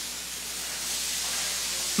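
A steady hiss that grows slightly louder, with a faint low hum beneath it.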